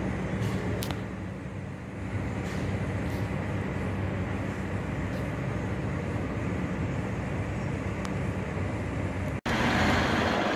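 Steady low hum of an idling diesel truck engine under general vehicle noise, with a few faint clicks in the first second. It cuts off abruptly near the end.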